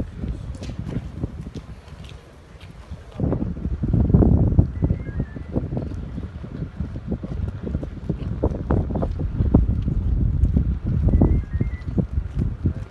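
Wind buffeting a handheld phone's microphone in uneven low rumbling gusts, louder from about three seconds in.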